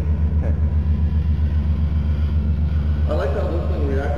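Deep electronic bass drone from the coffee-table sound sculpture's subwoofer, with a rapid, even flutter. Laughter comes at the start, and voices talk over the drone near the end.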